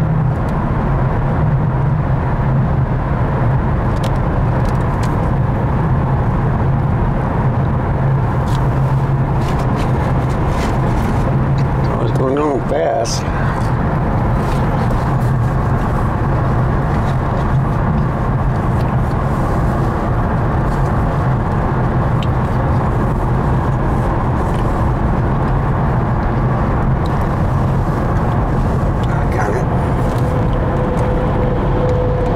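Steady road and engine noise inside a moving car's cabin at highway speed, an even hum, with a brief wavering sound about twelve seconds in.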